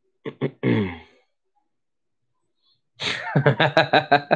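A man's short throaty grunt, as in clearing his throat, with a falling pitch, then about three seconds in he breaks into a run of laughter.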